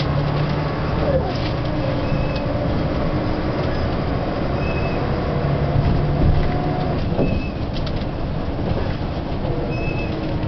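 Volvo B10M bus's mid-mounted diesel engine running under way, heard from inside the bus, its note shifting and sliding in pitch as it pulls. A short high beep recurs about every two and a half seconds.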